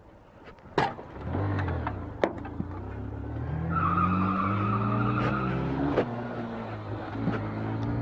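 A sharp crack about a second in, as a car's side mirror is struck, then a motorcycle engine revving hard and accelerating away, its pitch climbing through the gears, with a brief high squeal in the middle.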